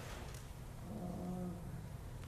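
A faint voice murmuring off-microphone for under a second, about a second in, over a steady low room hum.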